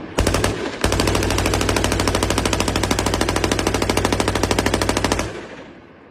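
Machine gun on a bipod firing on full automatic: a short burst, then one long unbroken burst of rapid, evenly spaced shots lasting about four and a half seconds. The firing stops about five seconds in and its echo fades away.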